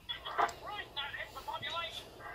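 A recorded voice clip played back through the small speaker of a replica RVS radio, set off by pressing one of its sound-file buttons.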